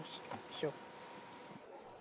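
Quiet room tone with a faint steady high hum, which fades out near the end; a brief faint voice sound about half a second in.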